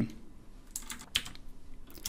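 A few keystrokes on a computer keyboard, separate sharp clicks in the middle of an otherwise quiet stretch.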